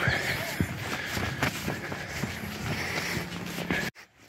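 Footsteps of a person walking at a steady pace on a rocky dirt trail, with a steady high drone underneath. The sound cuts off abruptly just before the end.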